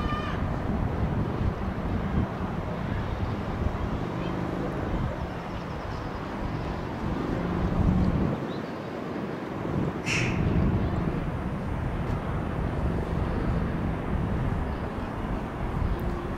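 Wind buffeting the microphone over a steady low outdoor rumble, heard from a high exposed vantage point. A brief high-pitched sound cuts through about two-thirds of the way in.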